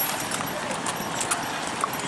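Horse's hooves clip-clopping on a paved road as it is led at a walk, over background crowd chatter.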